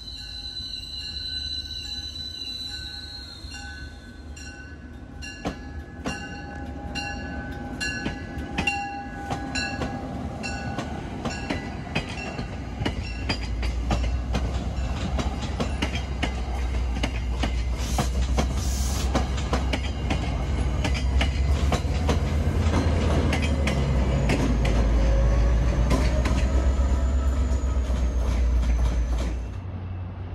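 MBTA commuter rail push-pull train led by a Bombardier CTC-1B cab car. It opens with a short horn chord, then a regular clicking about twice a second as it nears. Its rumble builds as the coaches roll past, loudest near the end with a high wavering wheel squeal, and it cuts off suddenly just before the end.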